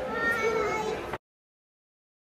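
A toddler's high-pitched voice calling out in one or two drawn-out, wavering calls. The sound cuts off abruptly a little over a second in.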